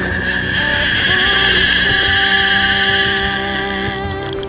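Fly reel's drag screaming as a hooked salmon pulls line off the reel: a loud, high buzz that builds about half a second in and eases off near the end.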